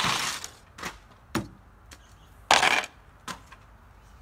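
Cut pieces of a plastic jug being handled and cleared away: crinkling plastic rustles and a few sharp clicks and knocks, the loudest a brief rustle about two and a half seconds in.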